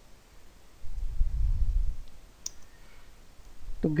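Computer keyboard being typed on: a low rumble lasting about a second, then one sharp key click about halfway through. A voice begins just before the end.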